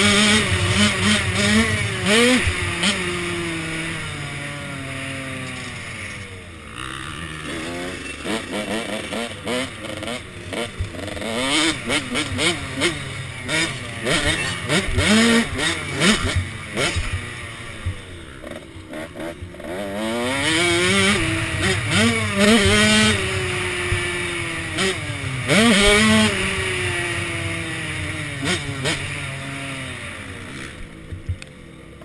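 KTM SX 105 two-stroke motocross engine revving hard and shifting as it is ridden around a dirt track. Its pitch climbs and drops repeatedly as the throttle opens and closes.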